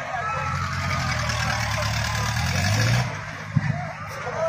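Swinging pirate-ship fairground ride in motion: a low mechanical rumble swells for about three seconds as the boat swings, then falls away, with a single sharp knock near the end.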